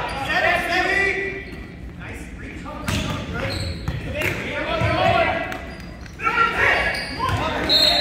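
Volleyball rally in a large gymnasium: several sharp strikes of the ball off hands and arms, among shouting voices of players and spectators.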